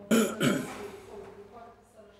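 A person clearing their throat: two quick bursts in the first half-second, then fading.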